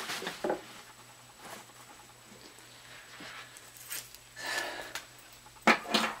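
Handling noises of things being moved about: a few light clicks, a brief rustle and a sharp knock near the end.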